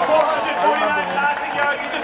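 Several spectators close by talking at once, their voices overlapping.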